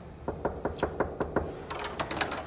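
Knocking on a hotel room door: about seven quick, evenly spaced raps, roughly five a second, followed by a few sharp, high clicks near the end.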